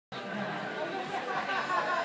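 Indistinct background chatter of several people talking at once, with no single clear voice.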